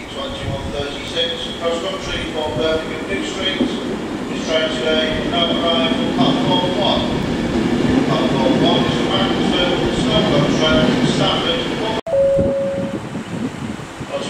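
A passenger train running through the station, its rumbling noise building through the middle and breaking off abruptly near the end, with voices over it.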